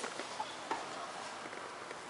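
Faint hiss with a few soft clicks and ticks of handling as the record and camera are moved.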